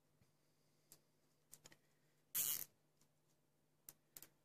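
Nylon cable tie being fastened around a bundle of power supply cables: a few small clicks, then a short zip about halfway through as the tie is pulled through its lock, and one more click near the end.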